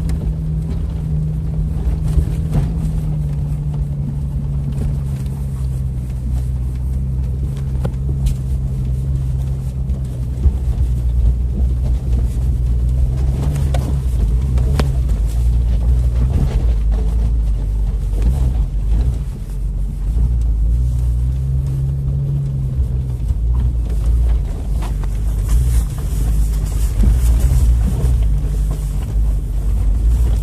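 Jeep engine running at low revs from inside the cabin as it crawls over a rocky off-road track, its pitch sagging slightly a few seconds in and lifting briefly near the two-thirds mark. Occasional sharp knocks come through as the vehicle goes over the rocks.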